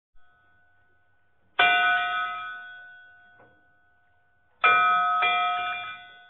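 Bell-like chimes of a logo sting: a struck chime about one and a half seconds in that rings and slowly fades, then a second chime a few seconds later with a quick follow-up strike, still ringing near the end.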